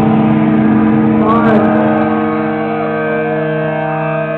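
A chord held on amplified electric guitars, ringing and droning steadily, with a few sliding pitch bends over it about a second in and again later.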